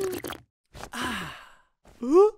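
A woman sipping wine with a short hummed 'mm', then a breathy sigh of satisfaction about a second in, its pitch falling as it fades.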